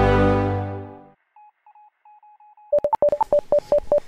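Intro theme music fading out within the first second, then electronic beeps of an incoming-transmission signal: a few faint, quiet beeps, then from near the three-second mark a fast run of loud clicking beeps alternating between two pitches, about five a second.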